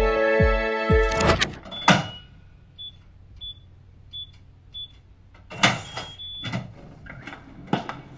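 Background music ends about a second in, and a digital door lock is worked. There are a few clicks, then four short high keypad beeps in a row, then a longer beep with the lock's motor and latch clacking as it unlocks and the door opens. Scattered knocks and clatter follow.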